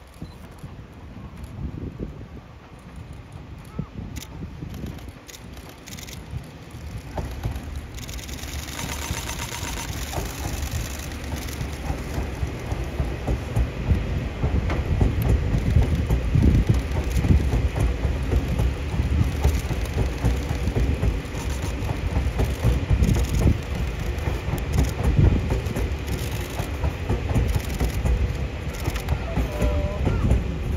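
Yellow Seibu electric train cars, a Shin-101 series set coupled with 2000 series cars, rolling along the track and passing close by, with wheel-on-rail running noise. The noise builds from about eight seconds in and stays loud as the cars go past.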